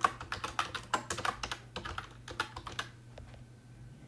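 Typing on a computer keyboard: a quick run of keystrokes that thins out about three seconds in.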